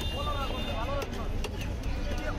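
Street fish-market ambience: several people's voices talking over a steady low rumble, with a few faint clicks.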